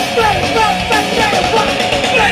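Punk rock band playing loud and live, with electric guitar, bass and drums, and short bending pitched lines riding over the band.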